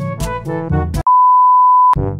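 Background music with stacked notes, cut off about a second in by a single loud, steady electronic beep tone lasting just under a second, after which the music resumes.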